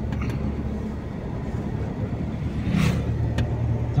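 Steady engine and road rumble heard from inside a moving van's passenger cabin.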